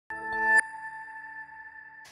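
Electronic TV news ident sting. A synth chord swells for about half a second, then gives way to a single bright chime tone that rings on and slowly fades.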